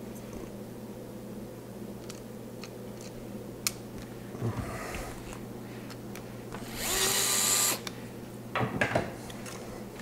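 A 3.5-inch hard drive in a plastic tool-less tray is handled and slid into a metal drive cage. A click and some rustling come first, then about a second of loud scraping as the tray slides into its slot, then a few knocks as it seats.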